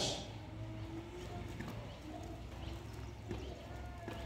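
A man's faint footsteps as he walks across the stage, with a few soft taps against quiet room sound.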